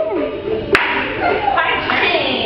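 A single sharp hand clap about three-quarters of a second in, with voices before and after it.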